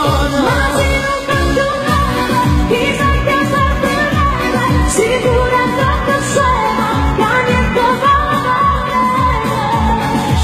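A woman singing a Neapolitan neomelodic pop song live into a microphone, over amplified backing music with a steady kick-drum beat of about two beats a second.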